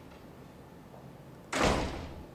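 A single sudden bang about one and a half seconds in, fading within half a second, over quiet room tone.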